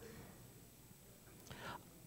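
Near silence: faint room tone through a desk microphone, with one short soft breath near the end.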